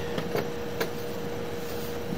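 Steady background hum and hiss with a constant high whine running through it, and a few faint ticks in the first second.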